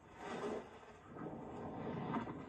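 Wind rushing over a parachutist's body-mounted camera microphone during a very low jump, a rough, noisy rumble that starts suddenly.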